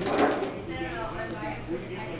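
Crinkle of a disposable aluminium foil pan and its lid being handled, a short crackly burst at the start, over faint murmuring voices.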